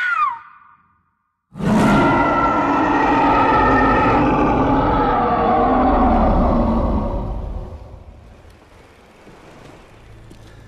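A woman's scream breaks off at the start, followed by a brief dead silence; then a giant gorilla's roar, deep and long with a low rumble beneath it, starts about a second and a half in, holds for about five seconds and fades away.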